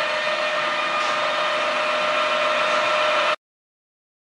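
A steady mechanical hum with hiss and a few steady tones, which cuts off suddenly about three and a half seconds in.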